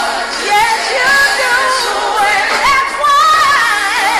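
Worship music with a singer holding long, wavering notes that slide up and down in pitch.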